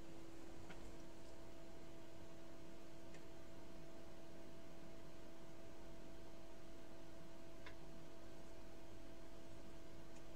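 Quiet room with a steady low hum and three faint clicks, about a second in, three seconds in and near eight seconds in.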